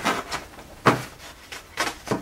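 Scissors snipping through a fabric apron: two sharp cuts about a second apart.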